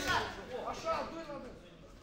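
A man's voice speaking for about a second, then dropping away to quieter room sound.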